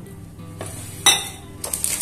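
A ceramic bowl knocked and set down on a hard countertop: a soft knock, then one sharp clink about a second in.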